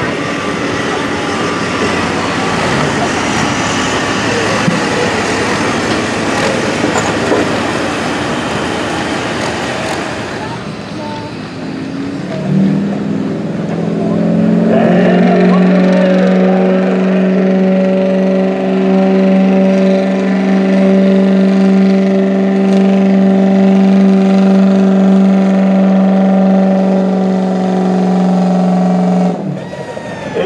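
International Harvester Turbo tractor's engine at full throttle pulling a weight sled, a loud dense roar. About ten seconds in it gives way to a Ford Super Duty pickup pulling the sled, its engine held at steady high revs as one strong, even drone until just before the end.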